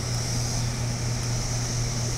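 Steady background drone: a constant low hum with a high hiss over it, unchanging throughout.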